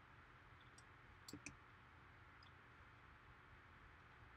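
Near silence with a few faint computer mouse clicks; the clearest is a quick pair about a second and a half in.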